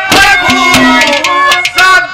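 Live Haryanvi ragni music: a male voice singing over sustained melodic accompaniment and repeated hand-drum strokes.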